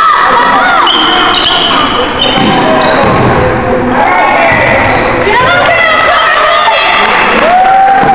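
Basketball bouncing on a gymnasium floor amid loud crowd voices and shouting in a large echoing hall.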